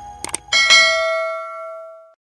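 A quick double mouse-click sound effect, then a bright notification-bell chime of several ringing tones that fades out over about a second and a half.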